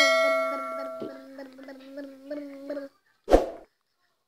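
A bell-like notification chime from a subscribe-button animation, ringing out and fading over about three seconds. A short thump follows a little after three seconds in.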